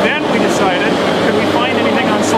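Speech only: a person talking continuously.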